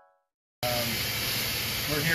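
The tail of background music fades out into a moment of silence. About half a second in, a steady, loud hiss of workshop background noise cuts in abruptly, with a brief fragment of a man's voice.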